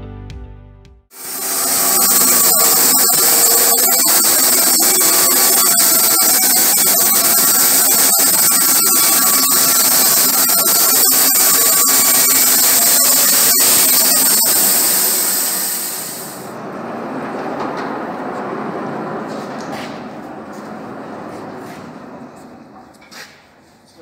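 Rhino 500 band sawmill with an 11 kW electric motor cutting through a log: a loud, steady hiss of the band blade in the wood over the motor's hum, with a few steady whining tones. About sixteen seconds in, the loud cutting noise stops suddenly, leaving a quieter running sound that fades toward the end.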